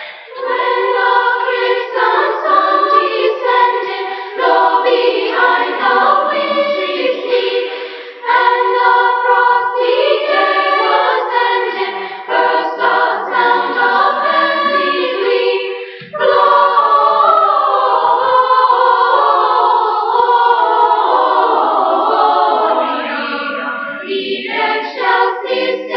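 Children's choir singing, played back from a cassette tape recording; the singing cuts in abruptly at the start after silence and runs on in phrases with short breaths between them.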